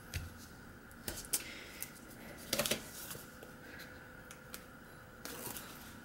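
Faint rustling and light clicks of cardstock and adhesive tape strips being pressed down and handled on a table, with a brief cluster of crinkles about two and a half seconds in.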